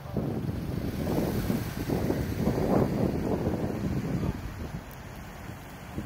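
Wind buffeting the microphone, a gusting low rumble that drops off about four seconds in.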